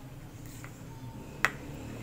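A single sharp click about one and a half seconds in, a spatula knocking against a plastic mixing bowl while scraping out cake batter, over a faint low steady hum.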